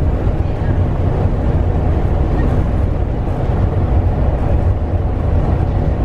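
Steady road noise inside the cab of a moving Thor Axis motorhome: a low, even drone of engine and tyres, with nothing standing out.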